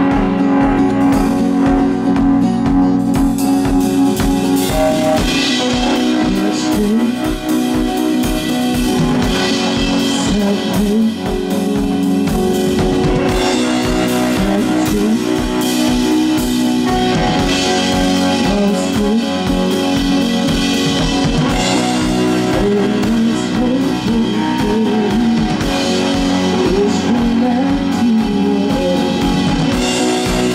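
Live rock band playing: a drum kit keeps a steady beat under guitars, bass guitar and keyboard, with a lead line that bends and wavers in pitch.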